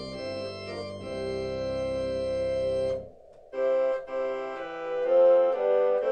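Electronic home organ playing a slow prelude in sustained chords. A held chord with a low pedal bass ends about three seconds in, and after a short pause the next phrase enters higher, without the bass.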